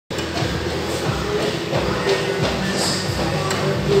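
Gym ambience: a run of low thuds about two to three a second from running footfalls on a treadmill, over background music and a steady machine hum.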